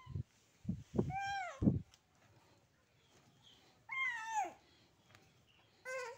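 A just-woken baby giving two short whimpering cries that fall in pitch, one about a second in and another about four seconds in, with a few soft low thumps in the first two seconds.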